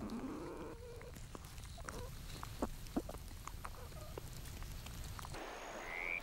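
Young platypuses stirring inside a nest of woven leaves and roots: faint scratching, rustling and small clicks over a steady low hum, with a brief rising whine at the start. Shortly before the end this gives way to a hissing night-creek ambience.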